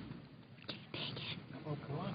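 Low, indistinct murmur of quiet conversation among people in a large chamber, with faint scattered voices and no single speaker standing out.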